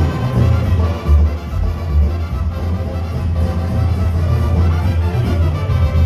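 Sinaloan-style banda playing live through a concert PA: an instrumental stretch of brass and reeds over a heavy, steady tuba-and-drum bass.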